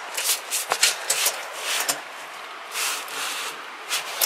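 Gloved hands handling a length of black stovepipe, with rustling and rubbing and two light knocks in the first half.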